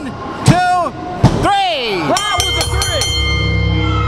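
A wrestling referee's hand slapping the ring mat for a pinfall count, two sharp slaps about half a second apart early on, each met by shouted counting. About two seconds in, the ring bell is struck several times and music starts up to signal the end of the match.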